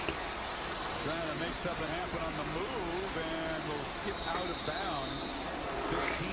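College football TV broadcast playing at low level: a commentator's voice over steady stadium crowd noise.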